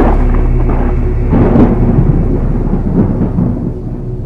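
A thunder rumble that swells about one and a half seconds in, rolls on with another peak near three seconds, and dies away by the end, over a held low music drone.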